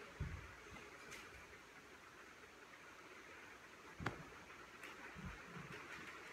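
Quiet room with a few soft, low thuds as bodies shift in aerial yoga hammocks and settle onto the mat, and one sharp click about four seconds in.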